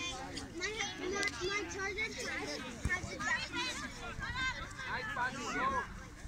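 Children's voices calling and shouting to one another during a soccer game, several high voices overlapping at once, with a brief low thump about three seconds in.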